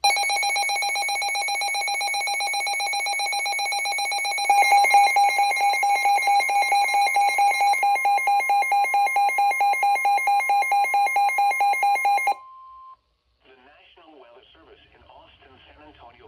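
NOAA weather radio receivers sounding their alert alarm: a loud, rapid electronic beeping that grows louder about four and a half seconds in as a steady alert tone joins it. The beeping stops about twelve seconds in, the steady tone ends a moment later, and a quiet voice from the radio follows.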